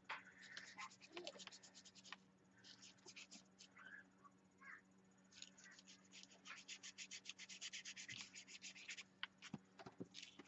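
A small paintbrush scrubbing paint onto a paper journal page in quick, faint back-and-forth strokes, several a second. There is a short run about half a second in and a longer, denser run from about five seconds to nine.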